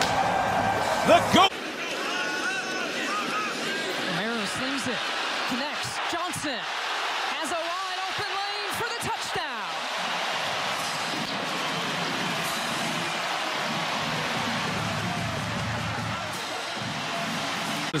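Football stadium crowd cheering and shouting after a touchdown, with music mixed in. It is louder for the first second and a half, then steadier and a little quieter.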